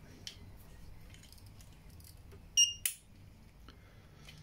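A cable being plugged back into a Genisys ambulance control module: faint handling clicks, then a very short high-pitched ring followed by a sharp click about two and a half seconds in.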